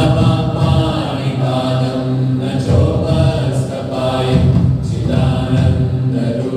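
Meditation music of devotional chanting by a group of voices, in the manner of a choir. The notes are long and slowly changing, over a steady low drone.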